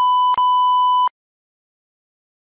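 A steady, high electronic beep tone with a short click about a third of a second in, cutting off suddenly about a second in.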